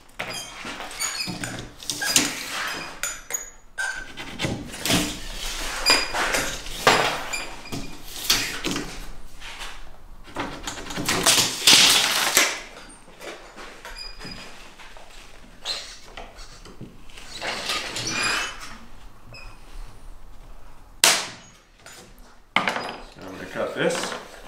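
Handling sounds from measuring out a plywood sheet: a tape measure drawn out and moved across the plywood, with a run of scraping, rustling bursts. One short sharp crack comes near the end.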